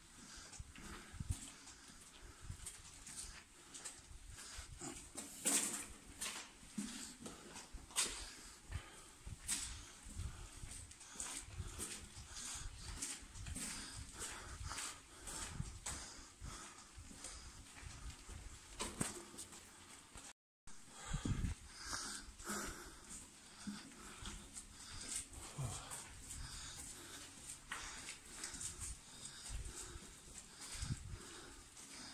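A person walking with uneven footsteps on a tunnel floor while breathing hard and panting on a long uphill climb. The sound cuts out completely for a moment about two-thirds of the way through.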